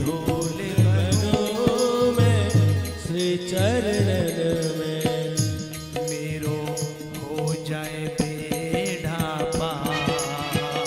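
Devotional bhajan: a man singing a wavering melody into a microphone over sustained accompanying tones, with a drum beat and small cymbals struck in a steady rhythm.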